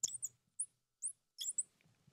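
Felt-tip marker squeaking on the glass of a lightboard while a word is written: about five short, high squeaks in quick groups.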